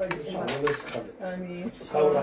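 Small gold chain jewellery clinking lightly as it is handled in the fingers, with a sharp metallic clink about half a second in.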